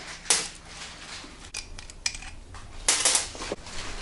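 Small loose metal engine parts clinking as they are handled and set down: the freshly removed cylinder head bolts and their washers. A sharp clink comes about a third of a second in, a few light ticks follow, and a louder cluster of clinks comes about three seconds in.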